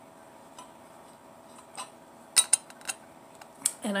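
A quiet stretch, then several sharp clicks and clinks from a stainless-steel travel tumbler with a plastic lid being handled and set down after a drink, the loudest about two and a half seconds in.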